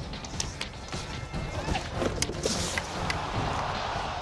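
Background music over ice-hockey game sounds: a scattering of sharp clacks from sticks and puck, with a short scrape of skates on the ice about two and a half seconds in.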